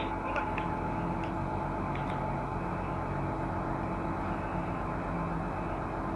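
Mobile crane's diesel engine running steadily at an even pitch, with a few faint clicks in the first two seconds.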